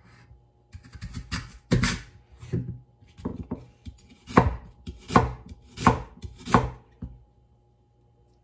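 A kitchen knife slicing through raw lotus root, each cut ending in a knock on a plastic cutting board. A few lighter cuts come first, then a steady run of sharper cuts, about one every 0.7 s, which stops about a second before the end.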